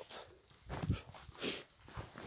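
Footsteps on the forest floor, with a couple of short crunching, rustling steps.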